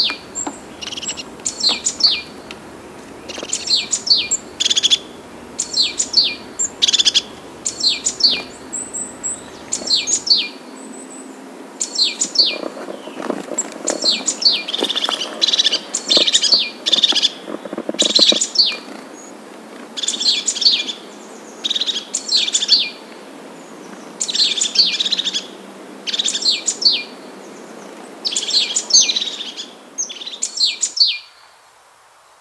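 Songbird singing: short, high chirped phrases repeated roughly once a second, with a steady background hiss between them.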